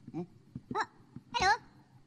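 A Minion's high, squeaky cartoon voice giving three short gibberish exclamations, the last the loudest.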